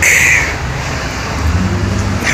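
Road traffic on a city street: a steady low rumble of passing cars. A short high-pitched sound comes at the very start.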